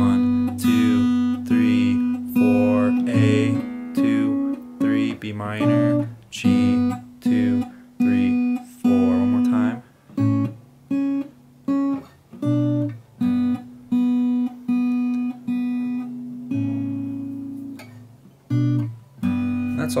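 Acoustic guitar played in a slow picked chord pattern, the notes ringing on. In the second half the notes come about twice a second.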